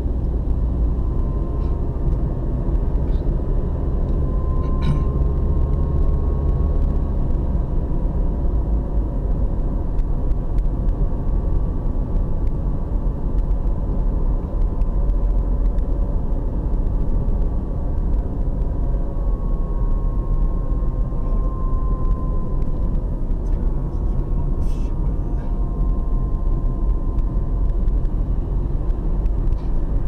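Steady low rumble of a car's engine and tyres on the road while driving, heard from inside the cabin.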